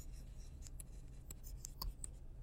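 Stylus writing by hand on a tablet screen: a run of faint, irregular taps and scratches over a low steady hum.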